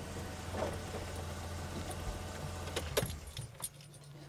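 A vehicle engine idling with a steady low hum, which cuts off about three seconds in, followed by a few light clicks.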